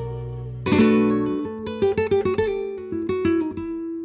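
Acoustic guitar music: a loud strummed chord about a second in, then a run of quick plucked notes and short strums.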